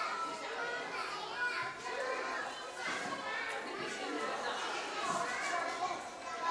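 Many young children's voices chattering and calling over one another in a large hall, with adult voices mixed in.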